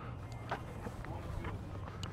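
Outdoor background with a steady low hum, broken by a sharp knock about half a second in and a few fainter clicks.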